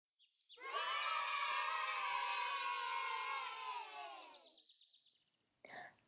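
A group of children's voices cheering together, starting about half a second in and fading out after about four seconds.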